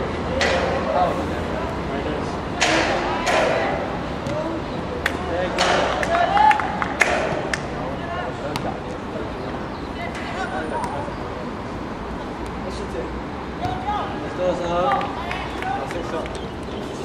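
Indistinct shouts and calls of voices across a football pitch, with several sharp knocks in the first half and scattered calls again near the end.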